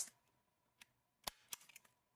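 Small handheld stapler driving a staple through folded origami paper: one sharp snap about a second in, followed by a few faint clicks.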